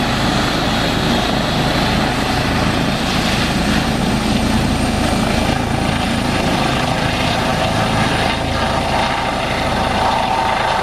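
Eurocopter EC135 twin-turbine rescue helicopter running at full rotor speed and lifting off, a loud steady rotor and turbine noise with a thin high turbine whine that rises slightly in pitch midway.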